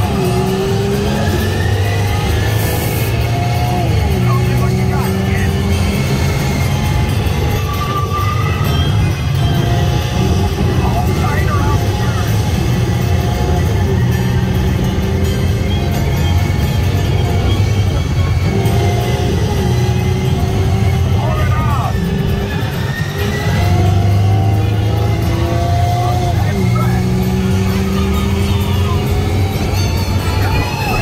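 Radiator Springs Racers ride vehicle speeding along its track: a steady, loud low rumble with wind on the microphone, and car-engine sounds that rise and fall in pitch over music.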